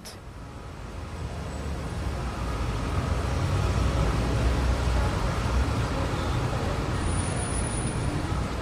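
Street traffic: a steady rumble of motor vehicles that swells over the first few seconds and then holds.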